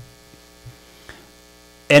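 Faint, steady electrical mains hum, a stack of even tones, in a pause between a man's sentences; his voice comes back right at the end.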